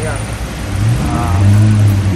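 A low engine hum that swells about a second in and holds steady, like a vehicle running close by, with a faint voice behind it.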